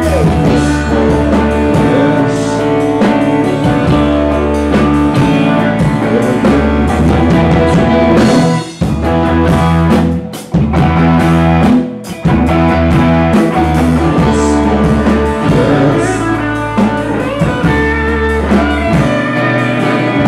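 Live rock band with electric guitars, bass guitar and drum kit playing loudly, the sound dropping out briefly three times in the middle for short stops before the full band comes back in.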